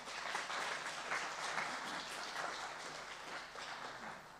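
Audience applauding, a dense patter of many hands clapping that tapers off near the end.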